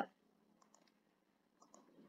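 Near silence with a few faint computer clicks, made while text is typed and a text box is moved on screen.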